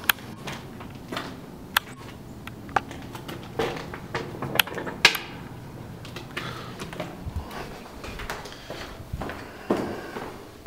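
Irregular sharp clicks and knocks from a glass entrance door being handled as it opens and swings shut, with footsteps.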